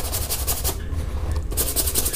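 Toothbrush bristles scrubbing soapy wet trouser fabric in quick back-and-forth strokes, working a water-based wall paint stain loose. It comes in two spells with a short pause in between.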